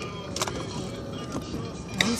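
Steady road and engine noise heard inside a moving car's cabin, with a sharp click about half a second in.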